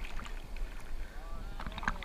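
Sea water sloshing and splashing against a GoPro camera at the surface of the surf, with a low rumble and scattered sharp droplet clicks.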